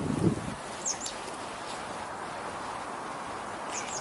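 Outdoor ambience: a steady hiss of background noise, with a few faint, short high chirps about a second in and again near the end.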